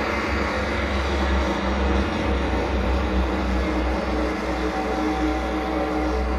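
Live death-industrial noise music: a dense, steady wall of distorted noise over a heavy low rumbling drone, with sustained droning tones in the midrange that grow stronger near the end.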